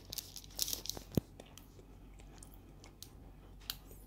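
Mouth sounds of a bite of soft sausage bread being chewed, heard close up: scattered small clicks and crackles, thicker in the first second and a half, then fainter chewing.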